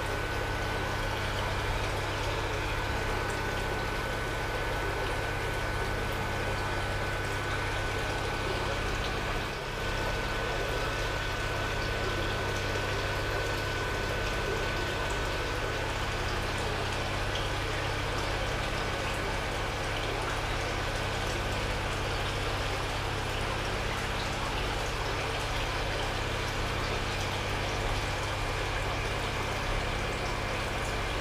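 Aquarium filter and water pump running steadily, water trickling and splashing in the tank, with a low steady hum underneath.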